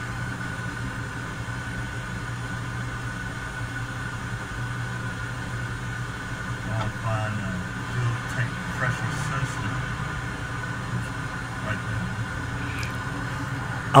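Car engine idling steadily, a low hum, with faint voices in the background.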